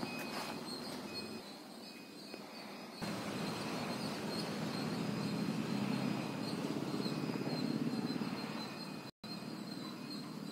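Outdoor ambience: a steady low rumble, like distant traffic, under faint high chirps and a thin steady high buzz. The sound jumps at an edit about three seconds in and drops out for an instant near the end.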